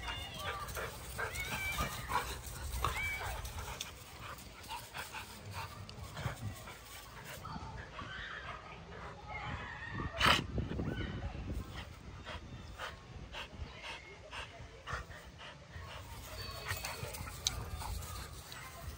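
Two dogs at rough play, giving short yips and whines, with a single loud bark about ten seconds in.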